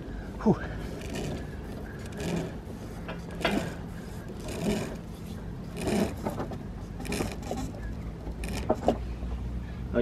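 Gaff mainsail peak halyard being hauled hand over hand through its blocks, a pull about once a second, with the hauler's effortful breathing.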